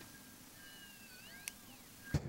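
Near silence, with faint high whistling glides and one soft click about one and a half seconds in.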